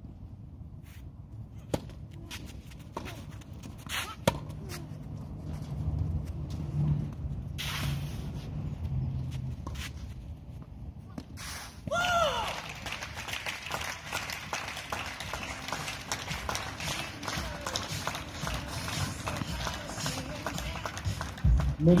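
Tennis rackets striking the ball in a rally, sharp pocks a second or two apart. About halfway through, a shout goes up and a crowd breaks into steady applause for the winning match point.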